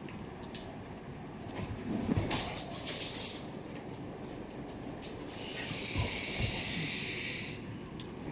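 A dog playing with a toy on a fleece blanket: scuffling and rustling, then a steady hiss lasting about two seconds in the second half.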